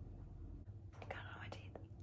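A person's faint breathy mouth sound with a few small lip clicks, about a second in and lasting under a second, over a low steady hum.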